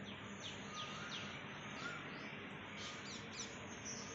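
Faint bird chirps: short high calls falling in pitch, repeated every half second or so, over a steady background hiss.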